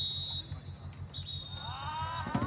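Referee's whistle blown for full time: a long, steady, shrill blast that stops about half a second in, then a second long blast starting just over a second in. Players shout over the second blast.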